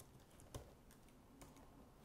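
A few faint keystrokes on a computer keyboard as a password is typed, in near silence.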